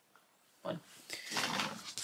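A small curly-coated poodle-type dog making a short, rough vocal sound about a second in, just after a woman's brief spoken word.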